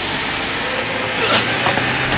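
A minivan's engine revving as it drives off, its pitch rising through the first second. A few short knocks follow in the last second.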